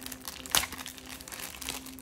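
Clear plastic wrap crinkling and crackling as it is handled around a small cardboard earphone box, with a sharper crackle about half a second in.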